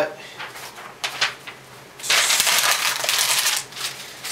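A sheet of paper being crumpled into a ball by hand: light rustling at first, then a loud, dense crackle for about a second and a half from halfway through.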